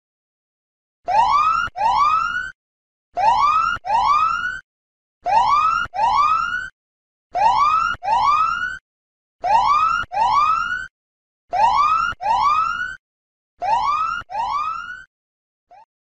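Time's-up alarm sound effect signalling that the one-minute reading timer has run out: a siren-like whoop made of two rising sweeps, repeated seven times about every two seconds, the last pair fading.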